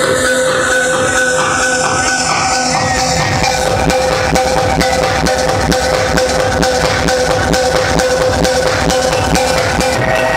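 Electronic techno music with a steady, regular beat. A sweep falls in pitch over the first three seconds, then a deep bass kick drops back in about three and a half seconds in.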